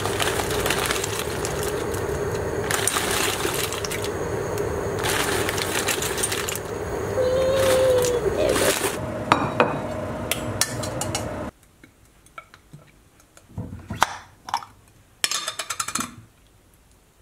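A stainless steel saucepan of water boiling on a gas hob, with dry pasta poured in, rattling against the pan in several louder bursts. About eleven seconds in the boiling stops suddenly and a few light clicks and knocks of a glass jar and plate follow.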